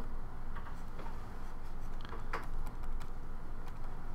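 Faint, scattered taps and scratches of a stylus writing on a pen tablet, over a steady low background hum.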